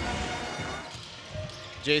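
Game sound from an indoor basketball court: a ball bouncing on the hardwood floor over a low crowd murmur in the arena.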